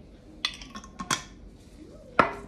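A glass mixing bowl clinking three times, sharp knocks with a short ring, about half a second in and twice around one second, as the last of the tomato coulis container is emptied into it.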